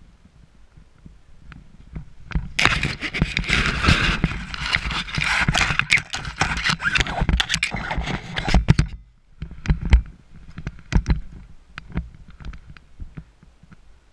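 Rustling and scraping of paraglider lines, risers, harness and gloves being handled close to the camera, loud and continuous from about three seconds in to about nine seconds. After that come scattered separate clicks and knocks of the gear.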